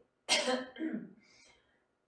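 A woman coughs sharply about a third of a second in, followed by a shorter, lower cough or throat-clearing about a second in.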